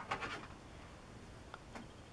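Faint handling of small plastic model-kit parts: a soft rustle at the start, then two light clicks about three-quarters of the way through.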